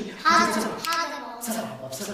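A child's high-pitched voice calling out in two short bursts near the start, among a few hand claps.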